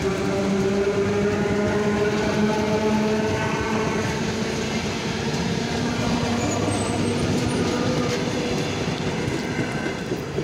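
Eight-car ER9M electric multiple unit passing close by at speed: a steady rumble of wheels on the rails with a continuous whine over it.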